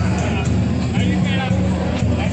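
People talking in a crowd over a steady low drone.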